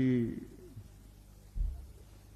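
A man's voice through a microphone ends on a drawn-out word falling in pitch, then a short pause broken by a brief low thump about one and a half seconds in.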